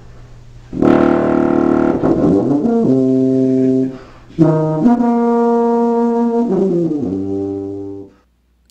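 French horn played solo: a slow phrase of held notes that changes pitch several times, with a short break about four seconds in and a run of falling notes near the end.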